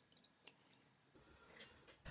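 Near silence: room tone, with two faint ticks, one about half a second in and one near the end.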